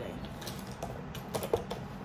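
Light clicks and taps of makeup containers being rummaged and picked up from a desk, a handful of them, mostly in the second second.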